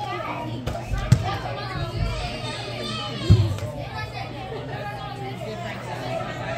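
Several children's voices chattering and calling over one another, with two sharp thuds, about one second and about three seconds in.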